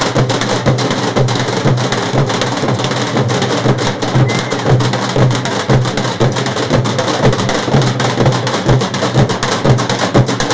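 A group of large steel-shelled drums beaten hard with sticks, playing a fast, driving rhythm of sharp strokes over repeating deep beats.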